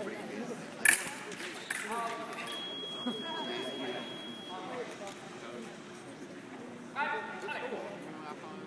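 Electric foil scoring machine sounding a steady, high, beep-like tone for about two seconds, signalling touches registered on both sides in a simultaneous attack. It follows a sharp clack about a second in, with short bursts of voices around it.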